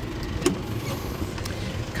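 Isuzu D-Max 3.0-litre turbo-diesel engine idling with a steady low rumble. About half a second in comes a sharp click as the front door latch is pulled open, and a fainter click follows later.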